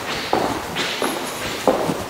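Footsteps on a hard wood-look floor, about two steps a second.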